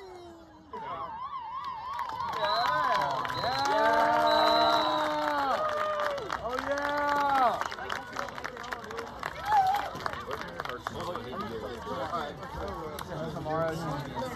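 Sideline spectators cheering at the end of a soccer match, with long drawn-out shouts. A short warbling whistle comes about a second in, just before the cheers.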